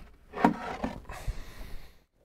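A Native Instruments Maschine controller being taken down off a shelf and handled: a sharp knock about half a second in, then rubbing and a few softer bumps.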